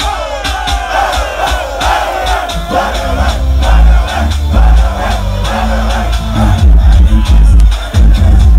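Loud live concert music through a PA with a heavy bass beat, with a crowd cheering over it, loudest in the first few seconds.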